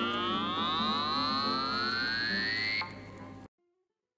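Electronic sound effect of many gliding pitched tones: one group rises slowly while a high tone is held, over sustained low notes. The high part drops out near the end and the whole sound cuts off abruptly, closing the song.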